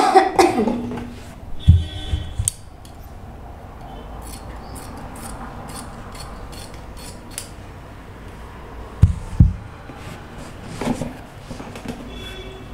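Fabric scissors snipping into a muslin bodice toile on a dress form, a run of short quick snips in the middle, clipping the edges around the armhole and neckline. It opens with a short loud sound, and a few dull knocks come from the fabric and form being handled.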